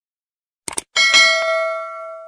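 Sound effect of a subscribe-button animation: two quick mouse clicks, then a notification bell dings and rings on, fading away over about a second and a half.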